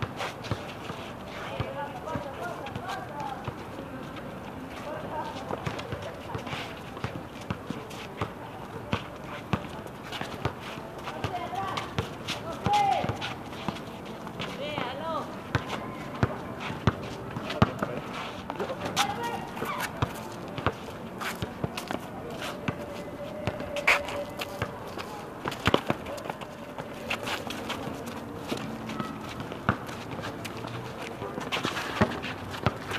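Pickup basketball on a paved outdoor court: many irregular sharp knocks of the ball bouncing and players' running footsteps, with shouts and chatter from the players.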